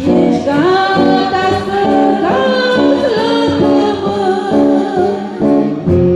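A voice singing a church song over strummed acoustic guitar chords, the sung line gliding up and down over the steady chords.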